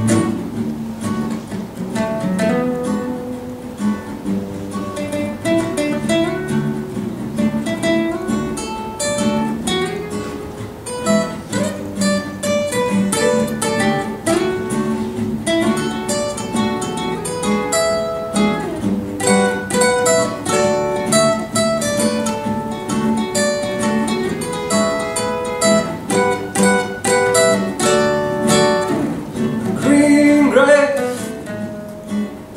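Three acoustic guitars playing an instrumental passage together, picked single notes running over strummed chords.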